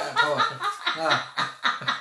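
A person laughing in a quick run of short bursts, about six a second.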